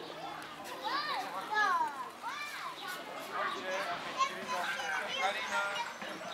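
Children's high-pitched excited voices and chatter, with several rising-and-falling shrieks between about one and two and a half seconds in.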